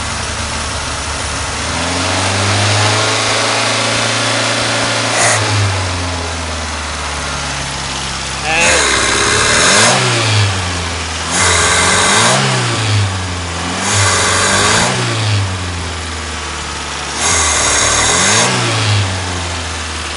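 Fiat petrol engine with the choke open, running at idle, held at a higher speed for a few seconds, then revved four times from about eight seconds in. Each time it is revved there is an initial loss of power before it picks up again, a fault the owner cannot explain.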